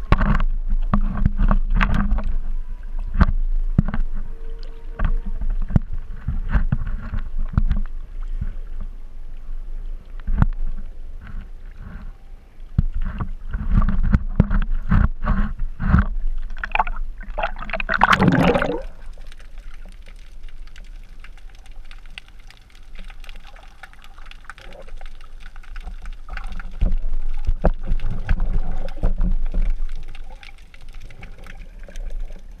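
Sea water sloshing and splashing around an action camera held at the surface, with many irregular knocks and thumps. A little past halfway comes a loud splashing whoosh, after which the sound turns quieter and muffled as the camera is underwater.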